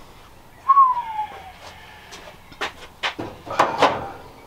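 Scattered sharp clicks and knocks of metal tools and parts being handled in a truck's engine bay. A single short whistle-like tone falls in pitch about three-quarters of a second in.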